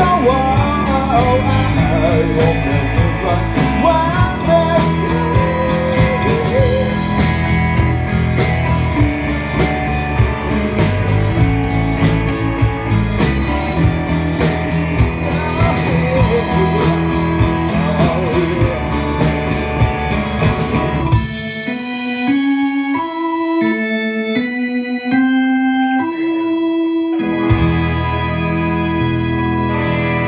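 Live rock band playing: singing over electric guitar, bass, drums and keyboard. About 21 seconds in the drums and bass drop out and the keyboard plays a line of held notes alone, then the bass and band come back in near the end.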